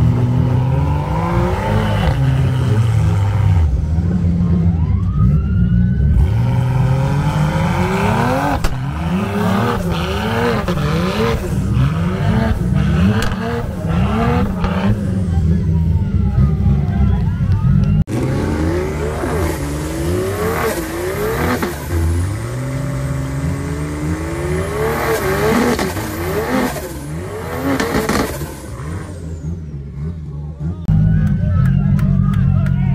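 Car engine revved hard over and over during a tyre-smoking burnout, its pitch climbing and dropping in quick repeated pulses, with crowd voices and shouting around it.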